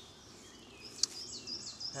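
A small bird singing in the background, a quick run of high, repeated short notes, with one sharp click about a second in.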